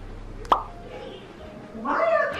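A single short, sharp pop about half a second in, over a faint steady low hum.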